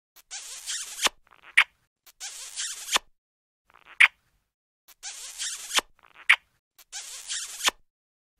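Cartoon kissing sound effect repeated over and over: a short smooching sound ending in a sharp smack, with a separate pop between each one, so a kiss comes roughly every second.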